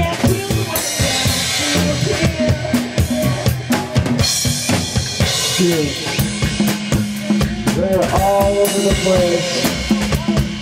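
Live reggae band playing, the drum kit to the fore with steady kick and snare strokes over bass and a melodic line; a low note is held from about six seconds in.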